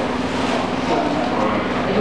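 A steady low drone, with indistinct voices in the background.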